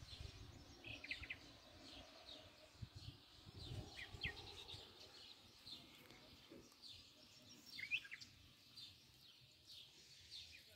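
Faint songbirds chirping: a few short, high calls, the clearest about eight seconds in, over a faint low rumble.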